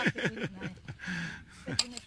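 Brief, indistinct speech from people talking, with a sharp click just before the end.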